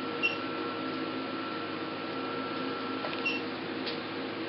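Alma IPL machine firing two light pulses about three seconds apart, each marked by a short high beep, over the unit's steady hum.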